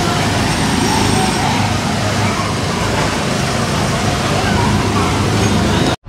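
Small ride cars on the Autopia track running their engines in a steady, continuous drone as they drive along the guide rail, with faint voices over it.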